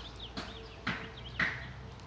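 Small birds chirping in the background: a few short calls, roughly one every half second.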